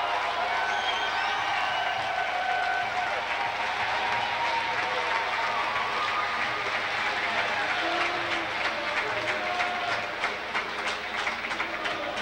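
Gymnasium crowd cheering and shouting at a basketball game, with fast hand clapping in the last few seconds.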